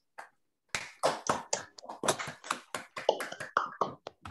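Hand clapping heard over a video-call connection: applause after a talk. It is a run of irregular sharp claps that starts about a second in and thins out near the end.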